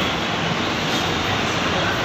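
Steady, loud rushing background noise of an airport terminal kerbside, with faint voices from the crowd mixed in.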